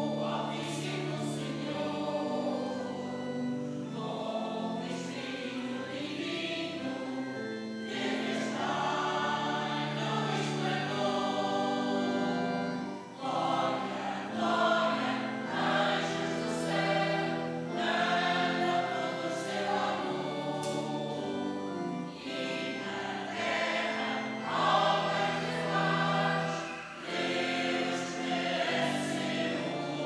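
Mixed choir of men and women singing a hymn, phrase by phrase, with brief breaks between lines.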